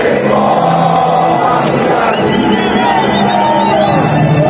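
Large crowd of football supporters singing a chant in unison, loud and steady, many voices close around the microphone.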